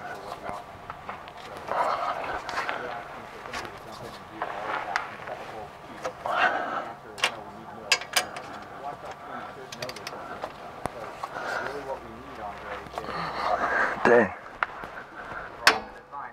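Half-inch click-type torque wrench, set to 130 ft-lb, being worked on a leaf-spring U-bolt nut. There is ratchet and metal handling noise, with a few sharp clicks about seven to eight seconds in, amid low vocal sounds.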